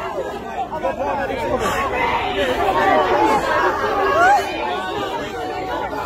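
A crowd of many people talking at once, their voices overlapping into an indistinct babble that grows louder towards the middle.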